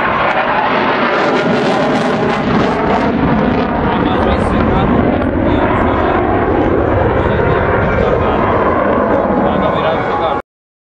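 F-16 Fighting Falcon jet engine, loud and steady, as the jet flies its display manoeuvres overhead. The noise swells slightly in the first second and then holds.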